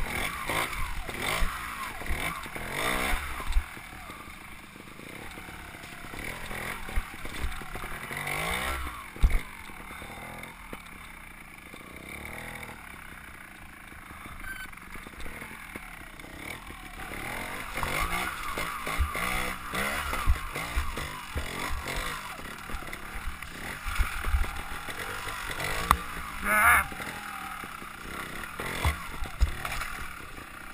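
Trials motorcycle engine picking its way over a rocky section, revved up and dropped back again and again as the rider works the throttle, with knocks from the bike over the rocks and low wind rumble on the helmet-mounted microphone.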